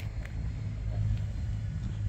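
A low, steady rumble with a hum underneath.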